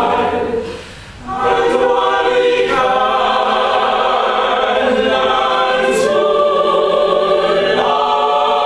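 Opera cast singing together as an ensemble, holding sustained chords. A short break comes about a second in, and the chord changes several times after it.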